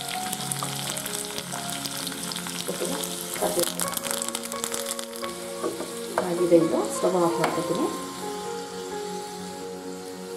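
Garlic frying in hot oil in a small pan for a tempering: a steady sizzle that grows into louder spluttering about six seconds in, as curry leaves are added.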